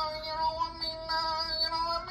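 A singing voice holding one long, steady high note, nearly flat in pitch, which stops just after the end.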